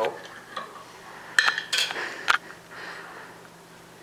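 Metal screw lid of a glass jar being twisted off, with three sharp clicks and knocks between about one and a half and two and a half seconds in as the lid comes free and is set down on the stone counter.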